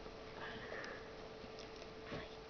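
A faint sniff through the nose over quiet room tone, with a thin steady hum.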